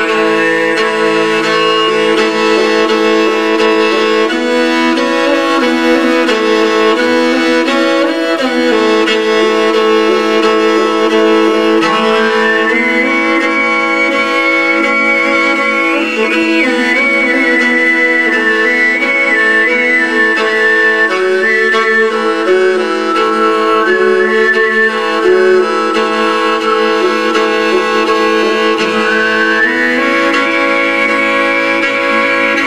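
Mongolian khoomei overtone throat singing: a held low drone with a high overtone melody stepping and gliding above it.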